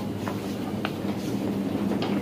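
Steady low mechanical hum of shop machinery, with a few light clicks over it.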